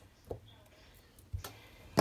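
Small scissors snipping a plastic self-adhesive rhinestone sticker strip: a couple of faint clicks, about a third of a second in and about a second and a half in.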